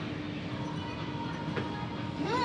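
Steady gym background noise: an even low rumble with a faint steady hum, and one light click about one and a half seconds in.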